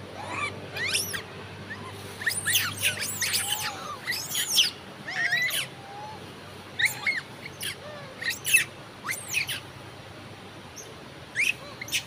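A troop of wild long-tailed macaques giving many short, high-pitched calls that rise and fall in pitch. The calls come in clusters about two seconds in and again around seven to nine seconds, with a last pair near the end.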